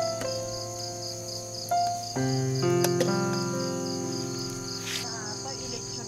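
Crickets chirping in a steady, evenly pulsing trill, under soft background music of held notes that change every second or so.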